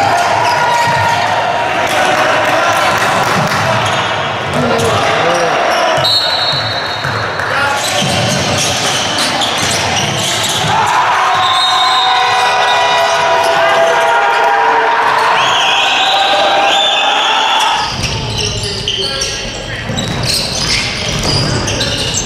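Live basketball game sound in a gym hall: a ball dribbling and bouncing on the court, amid players' and bench voices and short high squeaks.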